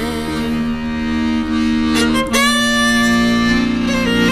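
Button accordion playing sustained chords with a fiddle in an instrumental passage of a folk song; the harmony changes a little over two seconds in.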